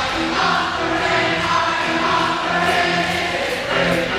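Live band music: a man singing, with electric guitar, in a passage with little low bass or drums.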